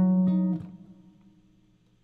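Archtop guitar playing the closing notes of a blues turnaround lick around a C chord. Two notes are picked in quick succession at the start and ring out, fading away within about a second.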